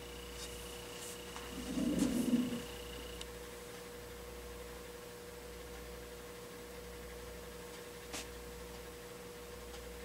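Faint steady electrical hum with a thin steady tone above it. A brief muffled low sound comes about two seconds in, and a small click near the end.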